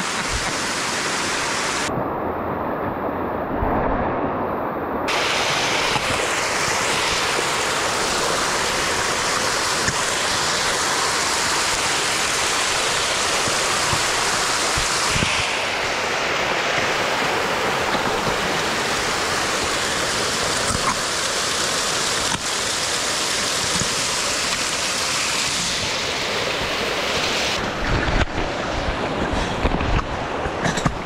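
A small mountain waterfall rushing over rocks close to the microphone, a loud, steady rush of water. The hiss dulls for about three seconds a couple of seconds in, and a few knocks come near the end.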